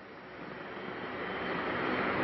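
Even rushing noise of an approaching vehicle, growing steadily louder.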